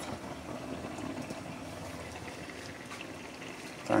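Water at a rolling, foaming boil in a large metal pot of green bananas and dumplings, bubbling steadily.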